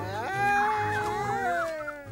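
Cartoon monkeys' drawn-out howling cry, rising at the start, held, then slowly falling in pitch, over background music.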